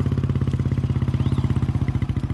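Motorcycle engine running at low revs with a steady, evenly pulsing exhaust beat as the bike rolls along slowly.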